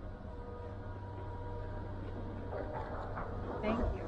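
Steady low rumble of skis sliding over snow with wind on the camera microphone. A person's voice calls out briefly near the end.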